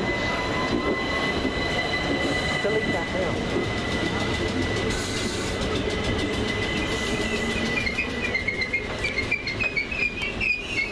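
Class 455 and Class 377 electric multiple-unit trains on third-rail track: one pulls away while the other runs into the platform, with a steady high whine over rolling rumble. From about eight seconds in, a stutter of short high-pitched squeals comes as the arriving Class 455 brakes to a stop.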